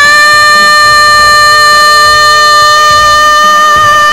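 A female singer belts one long, loud high note, held steady for about four seconds after swooping up into it, with a slight vibrato creeping in near the end.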